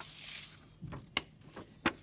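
Damp paper being peeled off kitchen aluminium foil, a soft rustling crinkle during the first half-second or so, followed by a couple of small clicks.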